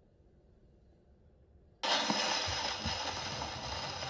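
Near silence, then about two seconds in an acoustic phonograph's reproducer needle drops onto a spinning 78 rpm shellac record: a sudden steady hiss of surface noise from the lead-in groove, with a few crackles and clicks.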